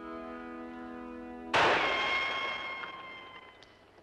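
A held brass chord of background music, broken about a second and a half in by a single rifle shot. The shot is the loudest sound and leaves a ringing tail that fades over about two seconds. The shot misses its bottle target, and no glass breaks.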